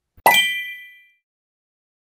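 A single struck, bell-like ding with a dull knock under it, ringing out and fading away within about a second. It sounds like a transition sound effect leading into the end card.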